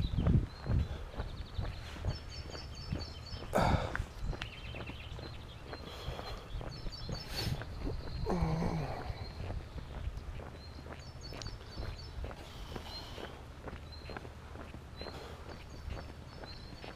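Footsteps on a paved road, a steady walking pace, with short runs of high bird chirps several times.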